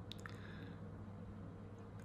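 A quiet pause in speech: a low, steady room-tone hum, with two faint, wet mouth clicks near the start as the speaker's lips part.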